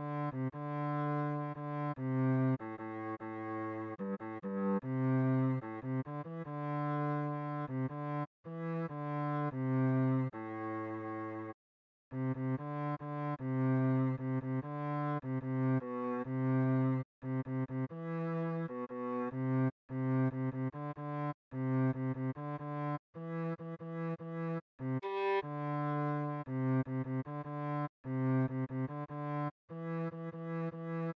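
Cello playing a melody one note at a time in its low register, in first position. The notes change every half second to a second and a half, with two brief breaks in the line.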